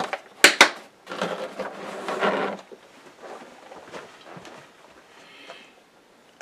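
Two sharp plastic clicks as the latches of a plastic gauge-pin carrying case are snapped shut. The case then scrapes as it is slid across the workbench for about a second and a half, followed by lighter handling noises.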